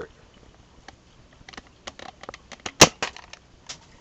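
Nerf Switch Shot EX-3 foam-dart pistol fired once, about three seconds in: a single sharp snap. Light clicks come before and after it.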